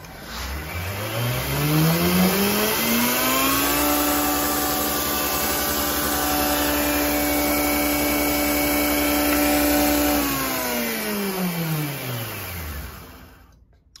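Homemade belt grinder with a TR Maker small wheel attachment switched on: the motor whine rises as it spins up over about three seconds, runs steadily with the belt hissing for about six seconds, then falls in pitch as it winds down and stops just before the end.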